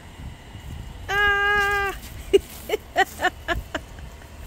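A woman's voice holding one drawn-out, steady cry for under a second, about a second in, followed by a run of short bursts of laughter.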